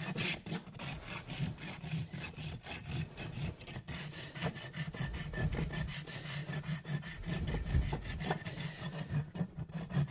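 Farrier's rasp filing the bottom of a draft horse's trimmed rear hoof, in quick, steady back-and-forth strokes of steel on horn.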